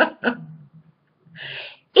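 A woman's laughter ends in its last quick, falling pulses, then trails off. About a second and a half in there is a short, breathy intake of breath.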